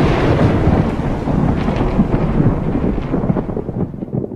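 A loud crackling rumble that slowly dies away toward the end.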